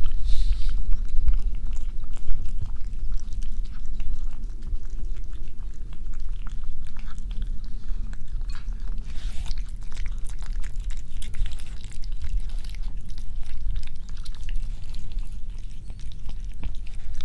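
Domestic cat eating close to the microphone: a steady run of small wet chewing and lapping clicks.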